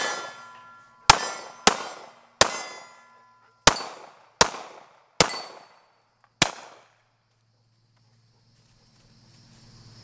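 Seven rifle shots fired in quick succession at an uneven pace, each dying away in a short echo. Several are followed by a ringing ping of steel targets being hit.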